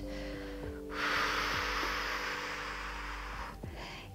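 Soft background music of held, sustained tones, with one long audible breath into the microphone starting about a second in and lasting about two and a half seconds.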